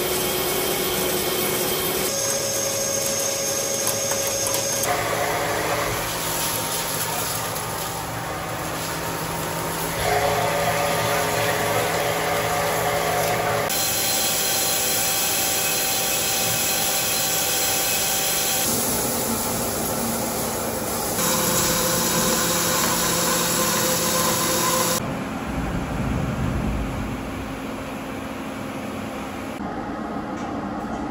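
A large lathe turning and boring a solid steel billet under flood coolant: the machine's steady running with the cutting tool's steady tones over the spray. The pitch and character change abruptly every few seconds, as short clips of different cuts follow one another.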